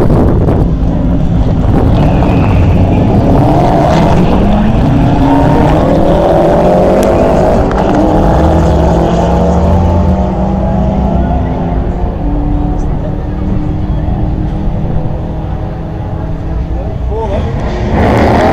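A VW Beetle drag car runs loud down the strip on a full-throttle run. Its engine pitch climbs in several rising sweeps over the first ten seconds, then levels off and eases back as the car gets farther away.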